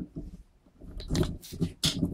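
Handling noise from a phone camera being held and adjusted: an irregular run of knocks, clicks and rubbing, with a short sharp scrape near the end.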